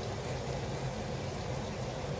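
Steady background hiss of room noise, with no distinct knocks, clicks or tones.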